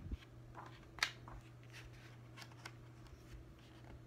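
Faint rustling and soft clicks of a paperback cookbook's pages being handled and turned, with one sharper tick about a second in.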